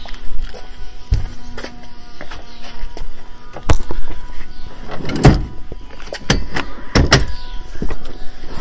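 A person getting into a car: handling noise, a car door, and several sharp knocks and thumps, the loudest about four, five and seven seconds in, over a faint steady tone.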